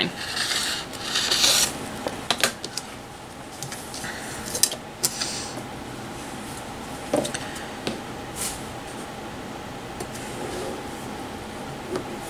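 Cotton fabric being cut along a ruler on a cutting mat. A rasping cutting sound comes in the first second and a half, then cloth rubs and rustles with scattered light clicks and taps as the fabric, ruler and scissors are handled.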